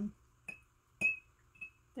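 Paintbrush being rinsed in a glass water jar, clinking against the glass: two clear clinks with a short ring, about half a second and a second in, and a fainter one near the end.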